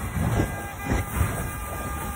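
Steady low rumble of a car driving along a wet highway, heard from inside the cabin.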